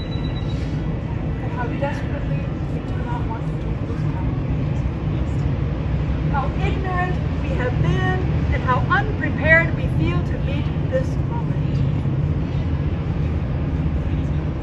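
Steady low rumble of city traffic, with faint voices talking in the middle.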